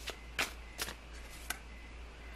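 Tarot cards being handled as a card is drawn from the deck: four short papery card snaps in under two seconds.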